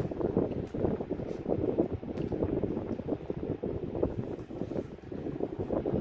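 A metal slotted spoon scooping thick meat sauce from a metal pan and spreading it over ravioli in a casserole dish: a continuous run of wet squelching with small scraping clicks.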